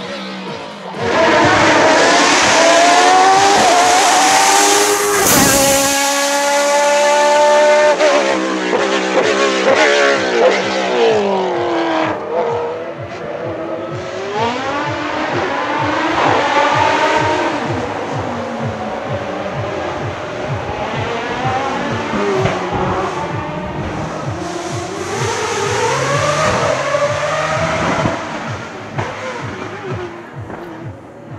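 Hill-climb race car engine at full throttle, revs climbing and dropping through quick gear changes as it passes close, with a sharp crack about five seconds in. Further up-and-down revving follows, quieter, until near the end.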